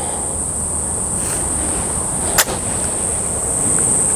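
A golf iron swung in an easy half swing, with one short, sharp swish about two and a half seconds in as the club comes through the bottom of the swing. A steady high-pitched drone of insects runs underneath.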